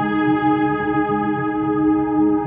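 Background music: one steady, sustained chord with no beat.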